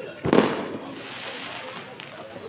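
A sudden loud burst a quarter of a second in, followed by a hiss that fades away over about a second and a half.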